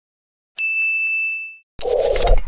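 A single bright ding sound effect, the notification-bell chime of a subscribe animation, rings for about a second and fades away. Just before the end a sudden loud burst of sound starts: the opening of the outro sting.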